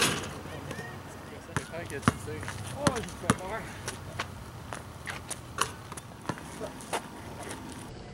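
Basketball bouncing and hitting the rim on an outdoor asphalt court: a string of irregular sharp thuds, the loudest right at the start as the ball strikes the rim.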